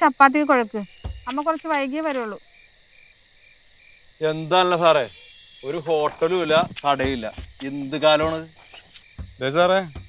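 Steady high-pitched chorus of crickets, with voices talking over it in several short bursts.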